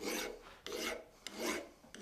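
Mill bastard file rasping across a steel ball-peen hammer head held in a vise, in about four even push strokes over two seconds, reshaping the dome to remove cuts and imperfections.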